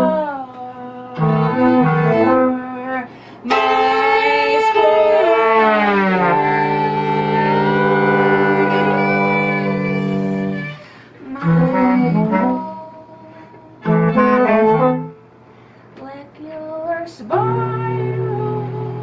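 A live trio of violin, bass clarinet and trombone playing chamber music in short chords separated by pauses, with one long held chord in the middle whose pitches slide downward before settling.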